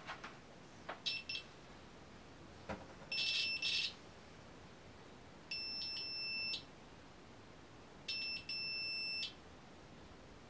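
A UNI-T digital multimeter's continuity buzzer beeping four times: one short beep about a second in, then three longer steady high-pitched beeps of about a second each. The beeps signal that the probe tips have closed a circuit through the conductive thread of the stitched e-textile swatch. Light clicks of the probe tips touching down come between the beeps.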